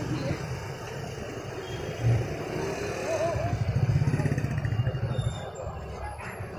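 Slow, congested street traffic: motorcycle and scooter engines running close by, with cars moving among them. The engine rumble grows louder for a couple of seconds past the middle, over the murmur of a crowd.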